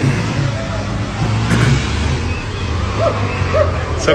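Street noise from a phone recording: a vehicle engine running steadily under a rushing hiss, with faint voices and laughter.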